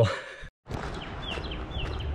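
Steady outdoor background noise with a small bird's short chirps, four in quick succession starting about a second in.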